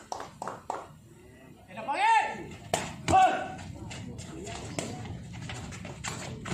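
Sharp smacks of a sepak takraw ball being kicked during a rally, a few quick ones near the start and two louder ones around the middle, with a player's drawn-out shout in between.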